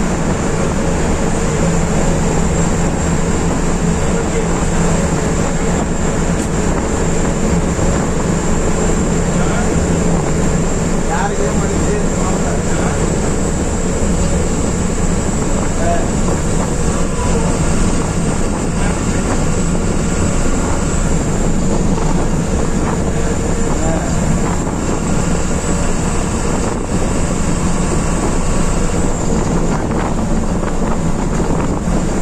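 Bus engine running at a steady cruising speed, heard from the driver's cabin: an even low hum over steady tyre and road noise that neither rises nor falls.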